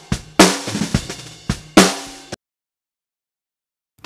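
Recorded snare drum track from a bottom snare mic playing through an expander/gate set with its threshold all the way down, so the gate stays open and the bleed from the rest of the kit comes through. There are two loud, ringing snare hits about a second and a half apart, with softer hits between them, and then the playback cuts off suddenly.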